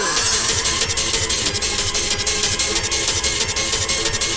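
Happy hardcore DJ mix with a fast, steady kick drum and hi-hats under sustained synth tones, as a new track comes in with no MC vocals over it.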